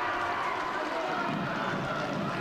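Football crowd and players cheering and shouting just after a goal, heard as a steady wash of distant voices.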